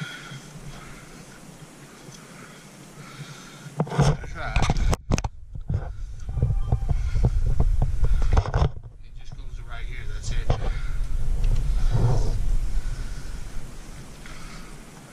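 Camera handling noise: after a few quiet seconds, loud, uneven low rumbling with knocks and scrapes on the action camera's microphone as it is reached into a small cave doorway and brought back out.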